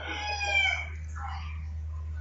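A bird's call, one high, drawn-out call lasting just under a second, over a steady low hum.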